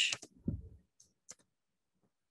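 A soft low thump, then two sharp computer mouse clicks about a second in, as a PowerPoint slideshow is clicked through to its end.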